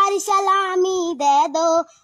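A young girl singing a Hindi patriotic song without accompaniment, holding long notes that bend between syllables.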